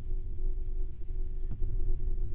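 Steady low background hum with a faint steady tone over it, and one soft click about one and a half seconds in.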